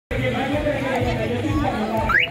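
Several women's voices overlapping at once, a lively group chatter.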